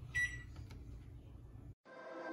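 A single short, high electronic beep a moment in, over a faint low hum that cuts off abruptly shortly before the end.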